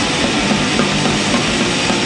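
Swedish kängpunk (d-beat punk) recording played continuously: distorted electric guitars and bass over a fast drum beat, loud and dense.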